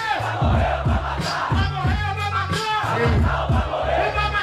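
A hip-hop beat playing loud over a sound system, with a crowd shouting over it.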